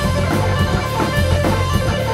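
A rock band playing live: electric guitar with drums, a loud, dense and steady wall of sound.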